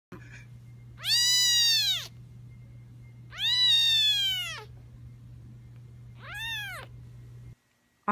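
Two-week-old kitten mewing three times, high-pitched cries that rise and fall in pitch, the first two about a second long and the last shorter, over a steady low hum.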